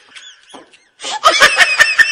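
A person laughing: a quiet first second, then a loud burst of rapid laughter starting about a second in.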